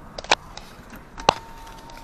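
A few sharp clicks inside a car's cabin, then a louder click just past a second in, followed by a faint, steady electronic beep.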